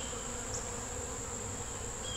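Honeybees buzzing steadily in an open Langstroth hive box, with a thin, steady high tone above the hum.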